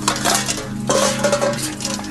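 A rapid run of clinks and clatters, like dishes and cutlery knocked together, over a steady low hum.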